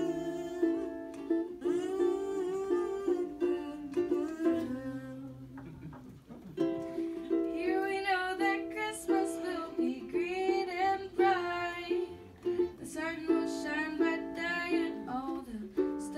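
A woman singing a Christmas carol into a microphone while strumming a ukulele, with a short break in the singing about five seconds in.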